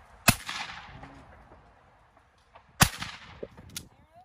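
Two shotgun shots about two and a half seconds apart, the first trailing off in a long echo.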